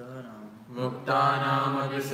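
Sanskrit verse chanted syllable by syllable in a sing-song recitation. The chanting is soft at first and much louder from about a second in.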